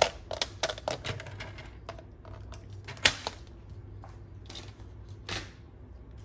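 Paper trimmer cutting black cardstock: a quick run of clicks and taps in the first second or so, a sharp click about three seconds in, and a longer scraping swish about five seconds in.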